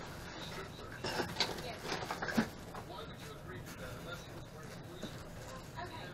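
Rustling and a few short knocks from handling foam packing and small parts while unpacking a mini lathe, most of them about one to two and a half seconds in.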